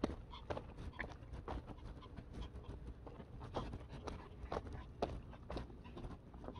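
Footsteps on a paved road at a walking pace, about two steps a second, faint and even.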